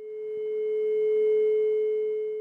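A steady electronic tone on a single pitch with faint higher overtones, swelling and then slowly fading.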